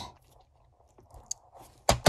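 Mostly quiet, with a few faint small clicks, then a short, sharp rustle near the end as a hand moves across the towel-covered bench onto a sheet of paper.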